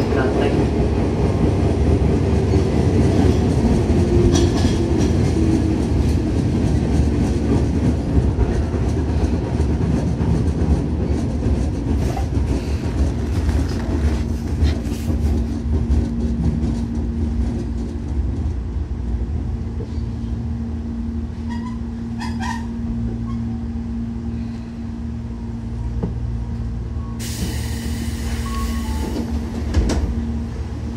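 Running noise aboard a Tobu 10000-series electric train at speed: continuous wheel-on-rail and traction-motor rumble. A steady hum sets in about halfway, the noise eases off a little after that, and a short spell of high hiss comes near the end.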